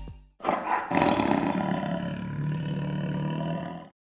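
The last note of the music fades away, then a loud roar starts sharply about half a second in and runs on for about three seconds before cutting off just before the end.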